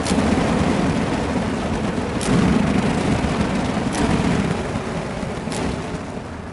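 Burning fire poi whirling close by: a loud, rumbling whoosh of flame through the air that swells about two seconds in and eases toward the end. A few sharp faint clicks come about every two seconds.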